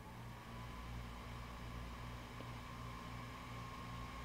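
Faint steady low electrical hum and hiss of room tone. A thin high tone comes in just after the start, rises slightly and then holds steady.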